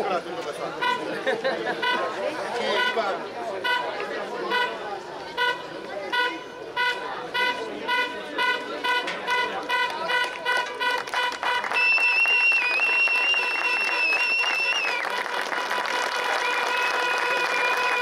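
Rapid, evenly repeated horn toots over crowd chatter, several a second, then a long high held horn note about two-thirds through, and another near the end.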